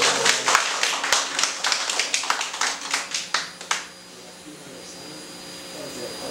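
A small group clapping by hand in a room, irregular claps for about four seconds that then die away.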